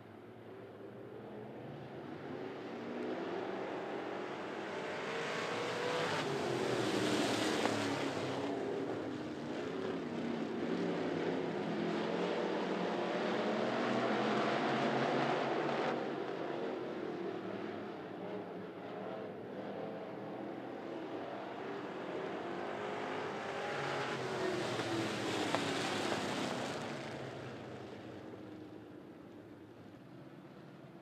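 A pack of dirt-track street stock cars' V8 engines running around the oval, swelling loud three times as they come past and fading in between, the engine pitch rising and falling as they go by.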